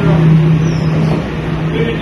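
A person talking over a steady low hum.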